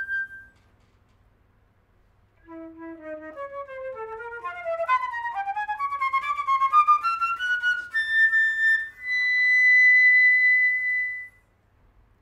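Solo concert flute playing: a held note dies away, a pause of about two seconds, then a rapid run of notes climbing from the low register up to the top, landing on a long high held note that stops shortly before the end.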